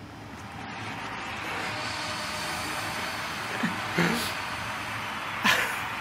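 A steady rushing noise that fades in over the first second and then holds, with a few brief voice sounds near the middle and near the end.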